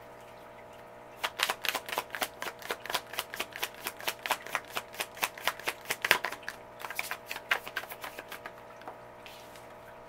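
A tarot deck being shuffled by hand: a rapid run of crisp card slaps, about four or five a second, starting about a second in and stopping near the eight-second mark.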